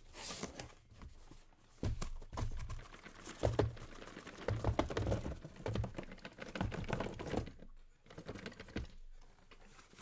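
Cardboard trading-card case being opened and the card boxes inside handled and set down: irregular rustling, scraping and soft knocks of cardboard. It eases off after about seven and a half seconds.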